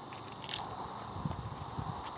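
A brief jingling rattle about half a second in, then a few soft low bumps, over a steady faint outdoor background.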